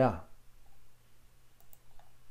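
A man says "yeah", then a pause with a low steady hum and a couple of faint quick clicks about one and a half seconds in, typical of a computer mouse being used to scroll through a document.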